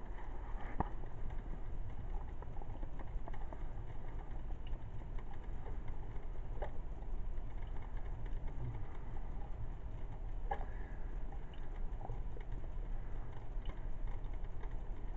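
Drip coffee maker brewing: water bubbling and gurgling through the machine and coffee dripping into the glass carafe, heard as an even low noise with scattered small pops.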